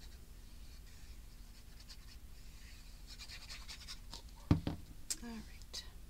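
Light scratching and rustling of cardstock as a precision glue bottle's tip is worked over a small paper panel. About four and a half seconds in there is a sharp thump, followed by a brief wordless vocal sound and a couple of light clicks.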